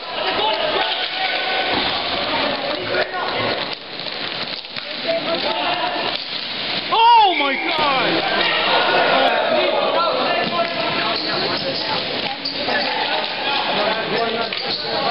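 Ball hockey game sounds: players and spectators calling out while sticks and the ball clack on the rink floor. About seven seconds in, one loud yell falls in pitch.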